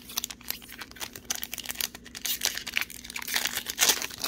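A foil trading-card pack wrapper being crinkled and torn open by hand: a run of crackling rustles that grows denser after about a second and is loudest near the end.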